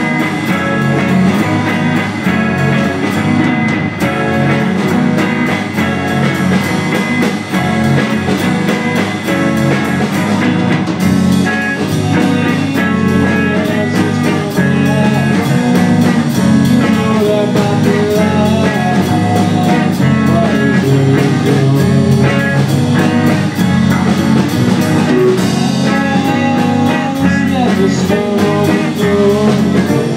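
Live rock band playing a bluesy song: two electric guitars, bass guitar and drums, with a male vocalist singing at times.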